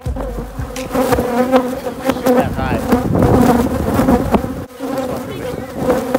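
A mass of honeybees buzzing loudly close to the microphone: a dense hum with many individual buzzes wavering in pitch over it, broken by a few brief knocks.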